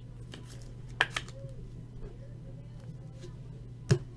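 A trading card and a clear plastic toploader handled together: light plastic clicks and taps, sharpest about a second in and just before the end, over a steady low electrical hum.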